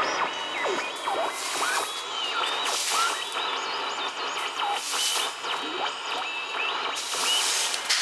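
AM radio of a Toshiba SM-200 music centre receiving a distant medium-wave station through its speaker, thin reception whistles sliding up and down in pitch over the programme. Hissing noise swells about every two seconds.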